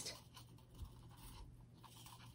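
Near silence with faint scratches and small ticks of thin wire being twisted by hand.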